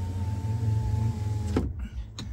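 Electric motor of a 2023 Chevrolet Silverado's power sliding rear window running as the glass slides open, a steady hum with a thin whine. It cuts off suddenly about a second and a half in.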